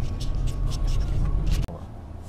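Steady low rumble of road and engine noise inside a moving vehicle's cab, which cuts off suddenly near the end to a much quieter low hum.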